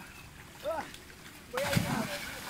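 A person dropping from a tree branch into estuary water: one sudden splash about one and a half seconds in.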